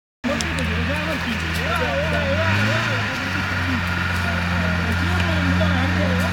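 A 4x4 off-roader's engine running at low, steady revs as it crawls up a steep dirt climb, with a brief rise in revs about halfway through. People talk over it.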